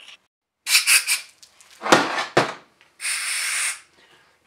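Short hisses, then a steady hiss of just under a second near the end, as the freshly drilled hole in a TH400 transmission pump is blown out with carb cleaner spray and compressed air. Around two seconds in the cast pump body scrapes on the steel bench as it is handled.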